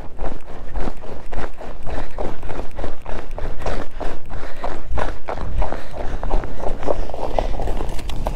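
Boots running over snow-covered lake ice: quick, even footfalls, about three a second.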